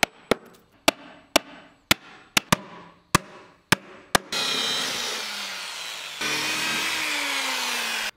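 A steel chisel driven into a wooden finger joint with about ten sharp strikes, roughly two a second. About four seconds in, a power drill starts boring holes in a pine board, its whine sinking in pitch as the bit cuts in.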